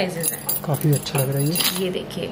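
Stainless steel bangles clinking and jangling against each other as they are handled and picked up from a tray, with voices talking underneath.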